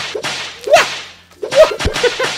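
A tinsel-wrapped whip lashed and cracking several times, the two loudest cracks about three-quarters of a second and a second and a half in.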